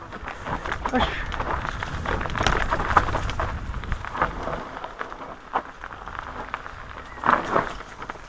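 Mountain bike rolling fast down a rough dirt and leaf-covered singletrack: tyre noise with frequent clicks and rattles from the bike, over a low rumble that is heavier in the first half.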